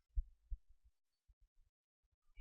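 Faint low thumps from typing on a computer keyboard, two stronger ones in the first half second and a few softer ones after.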